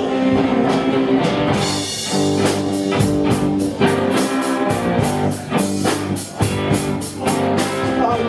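Live rock band playing an instrumental passage of a blues number: electric guitar, bass guitar and drum kit, with a steady beat of drum hits under held guitar notes.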